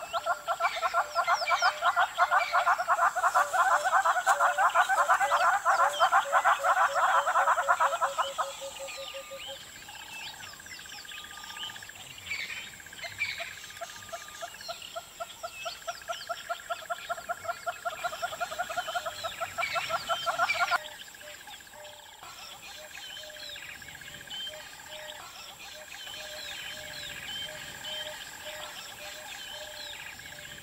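Forest wildlife calls: a loud, rapid pulsing trill that cuts off suddenly about nine seconds in and returns from about fifteen to twenty-one seconds, over many short bird chirps and a thin steady high whine.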